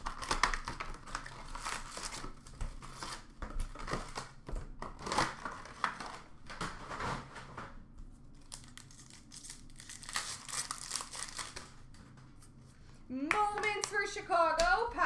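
Trading card packs torn open and their foil wrappers crinkling, in repeated bursts of rustling with short pauses, as the cards are handled. A voice starts calling a card near the end.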